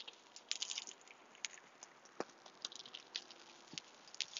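Faint, irregular small clicks and crackles, with a few sharper ticks among them.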